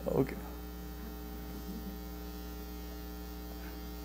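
Steady electrical mains hum, a low buzz made of several even, unchanging tones, following the brief tail of a man's laugh right at the start.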